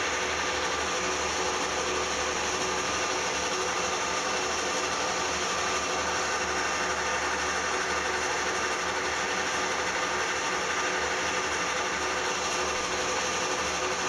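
Metal lathe running steadily with a gear whine, turning a finishing pass on a cast aluminium bar.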